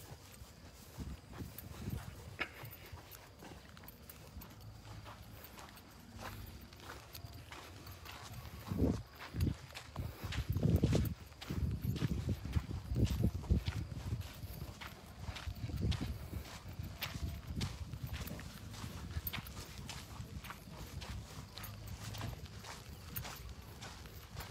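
Wind buffeting a phone microphone in gusts, strongest around the middle, over a run of light footsteps on a dirt track.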